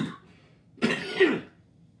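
A man coughing and clearing his throat: a short burst right at the start, then a longer, louder one about a second in.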